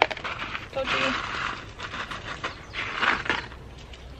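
Dry broad bean seeds shaken out of a paper seed packet into a cupped hand, rattling and rustling in two short bursts, about a second in and again near three seconds.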